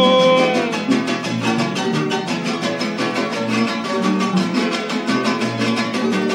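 A live son jarocho ensemble of harp and strummed jarocho guitars plays a steady, rhythmic instrumental passage. A sung note is held and fades out within the first second.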